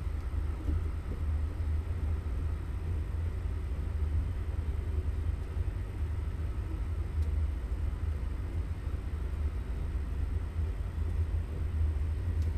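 A steady low rumble with a faint hiss, with no distinct events.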